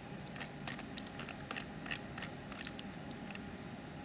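Light, irregular clicks and taps of a laptop keyboard and mouse, about a dozen spread over a few seconds, over a steady hum.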